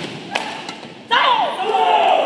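A couple of sharp racket strikes on a badminton shuttlecock, then about a second in, sudden loud shouting voices in the hall as the rally ends.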